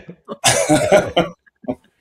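A short, breathy burst of laughter from one person about half a second in, breaking into a few quick pulses before it stops.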